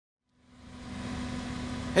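A steady mechanical hum with one constant tone running through it, fading in from silence in the first second.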